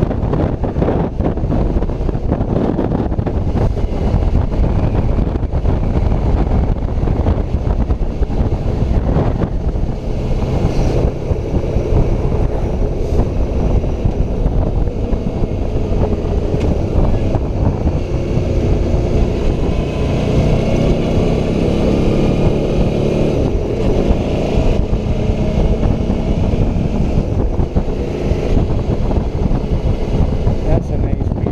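Motorcycle ride heard from a helmet-mounted camera: heavy wind buffeting on the microphone, with the Suzuki V-Strom's V-twin engine running underneath. The engine note comes through more clearly in the second half.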